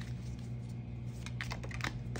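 Round oracle cards being handled and shuffled, with a few short sharp clicks of card against card in the second half, over a steady low hum.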